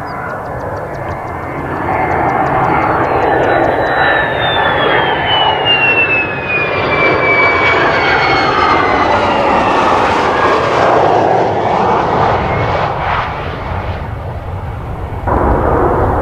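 Mitsubishi F-2B fighter's single turbofan jet engine on approach with gear down, passing close: a jet roar that builds about two seconds in, with a high turbine whine falling steadily in pitch as it goes by. The level drops off late on, then jumps abruptly near the end.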